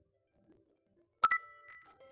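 A bright metallic ding, struck twice in very quick succession about a second in, ringing on with a few clear tones that fade within a second.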